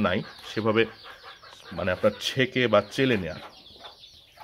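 A man's voice speaking Bengali in short phrases with brief pauses.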